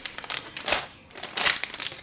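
Plastic ziplock bag of nori seaweed sheets crinkling and crackling irregularly as it is opened and handled, with a brief lull in the middle.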